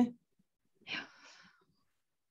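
A single short breath into a microphone, about a second in, fading within half a second. The tail of a spoken word is heard at the very start.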